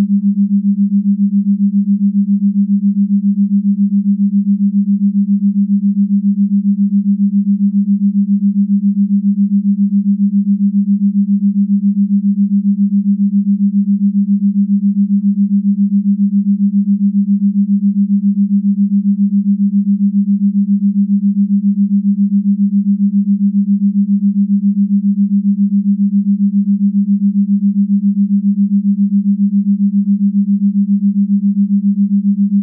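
Binaural-beat brainwave tone: one steady low tone near 200 Hz, pulsing quickly and evenly in loudness.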